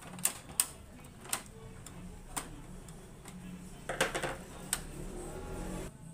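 Sharp clicks and knocks of hard plastic as the Epson L3210 printer's housing is handled and lifted: single clicks through the first two and a half seconds, then a quick cluster about four seconds in.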